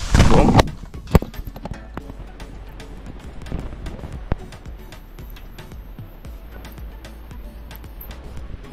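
Phone microphone being handled: a loud rush of rubbing for the first half-second, a sharp knock about a second in as the phone meets the rock, then faint scattered taps and rustles.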